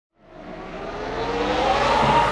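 A car engine revving up, rising in pitch and growing louder from silence.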